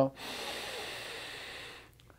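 A man taking one long, deep breath in: a steady rush of air lasting nearly two seconds.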